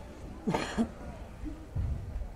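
A person coughing once, a short throaty burst about half a second in.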